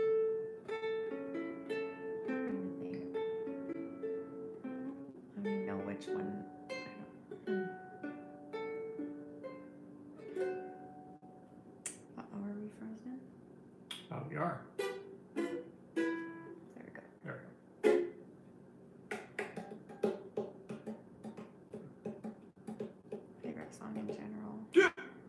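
Ukulele playing with a woman singing along over the first half. About halfway through the singing stops and the ukulele goes on alone with plucked notes and strums.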